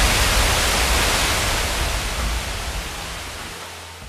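A steady rushing noise with no tone or rhythm in it, fading out gradually across the few seconds.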